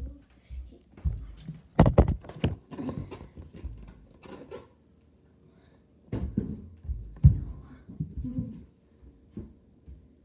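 A string of thumps and knocks: a phone being handled and set down, and footsteps on the floor, loudest about two seconds in and again about seven seconds in.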